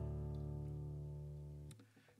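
Acoustic guitar chord ringing out and slowly fading, then cut off suddenly near the end.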